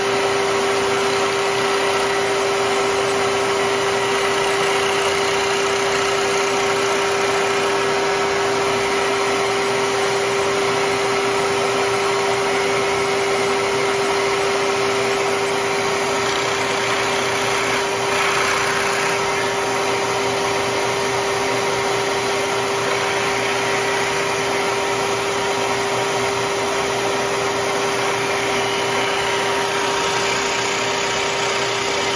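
Bridgeport vertical milling machine running steadily with a constant hum, its spindle cutting pockets out of a rifle buttstock to lighten it. The cutting noise grows briefly harsher about eighteen seconds in.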